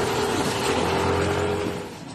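Outboard motor of an inflatable rescue boat running on the river, under a steady rushing noise; it fades down near the end.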